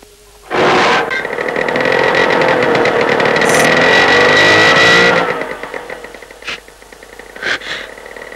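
Motor scooter engine starting with a sudden burst about half a second in, then running and revving with a high whine, fading away after about five seconds.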